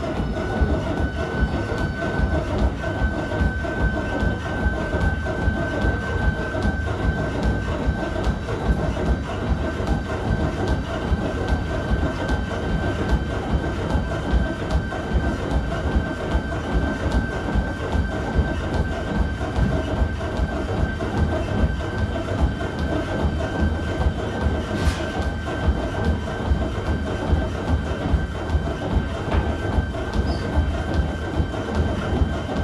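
Large laboratory running treadmill under a runner. Its drive motor gives a steady whine that rises slightly in pitch in the first couple of seconds as the belt is sped up, over a low rumble. The runner's footfalls land on the belt at a regular beat of nearly three steps a second.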